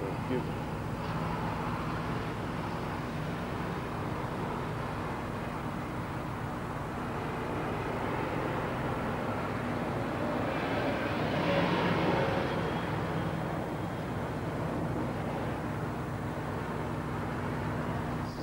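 Outdoor traffic noise: a steady drone of passing vehicles, with one vehicle going by that swells about ten to thirteen seconds in.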